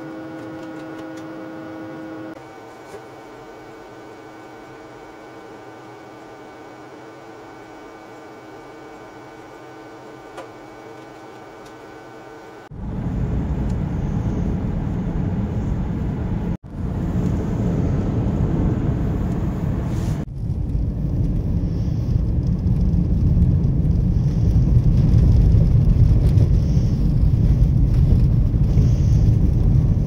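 Steady electrical hum of lab equipment, made of several fixed tones, for the first dozen seconds. Then the loud, even low rumble of a car driving on a snow-covered road, heard from inside the cabin, which breaks off briefly twice and grows a little louder toward the end.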